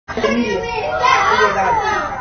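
Young children's voices, talking and calling out in high, gliding tones.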